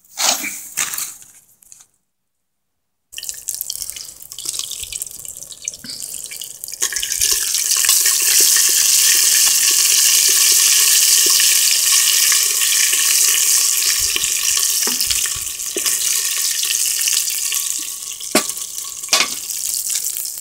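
Oil and red paste sizzling in a metal pot over a wood fire while being stirred. A steady hiss begins about three seconds in, grows louder about seven seconds in and holds, with a couple of sharp clicks near the end.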